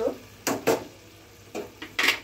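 Two sharp clicks from a small spice bowl against a frying pan as turmeric powder is tipped in, then lighter clicks near the end. A curry simmers faintly in the pan underneath.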